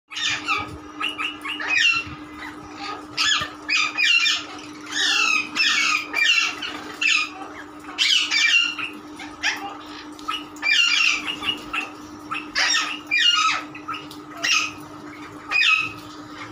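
A flock of sun conures and rose-ringed parakeets squawking: harsh, shrill calls coming one after another, several a second at times, with short gaps. A steady low hum runs underneath.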